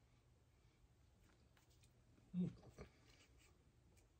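Near silence with faint clicks of a plastic dip tub and a tortilla chip being handled. About two and a half seconds in comes a brief low 'hm' from the voice, falling in pitch, followed by a light tap.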